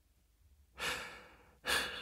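A male narrator's breaths in a pause: silence, then a breath about a second in that fades away, and a second, shorter breath near the end.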